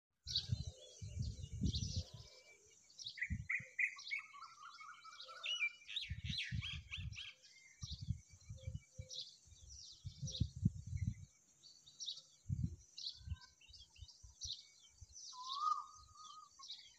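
Nestling birds chirping in many short, high calls, with a quick run of chirps about three to seven seconds in. Repeated low thuds are mixed in throughout.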